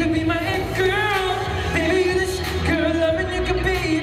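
Pop song performed live: a male singer sings into a handheld microphone over a backing track with a steady bass, holding wavering, bending notes without clear words.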